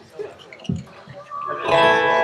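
Acoustic guitar: a few soft plucks, then a chord strummed and left ringing about a second and a half in.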